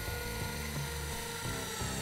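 Battery-powered intraosseous drill running steadily with a high whine as it drives an intraosseous needle into bone, the pitch sagging slightly toward the end as it bores in.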